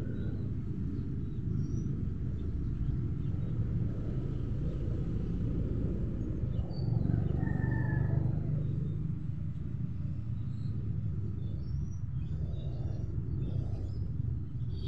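Outdoor ambience: a steady low rumble that swells about seven to nine seconds in, with faint bird chirps.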